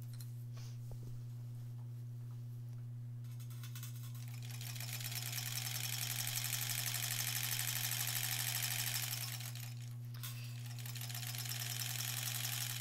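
A 1938 Kenmore straight-stitch sewing machine stitching a seam. Its motor drives the handwheel through a small motor pulley pressed against the wheel, with no belt. It starts a few seconds in, builds to a fast, even chatter and runs steadily, stops briefly about ten seconds in, then runs again.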